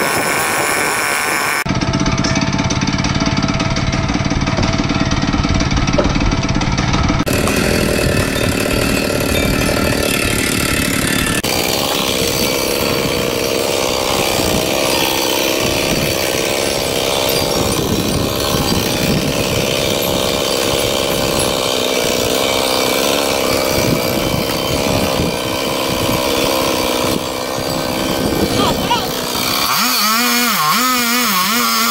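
Chainsaw running continuously while cutting into the trunk of a dead tree, its pitch wavering as the chain bites.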